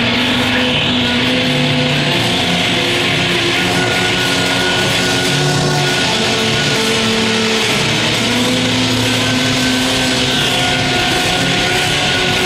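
Live psychedelic band music, loud and dense: long held droning notes shifting every second or two, with bowed violin and a drum kit among the instruments.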